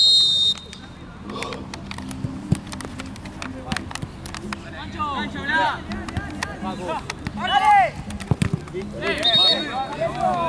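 A referee's whistle gives one short, loud, steady blast, with a similar blast again near the end. In between, players shout across the pitch, with a couple of sharp thuds.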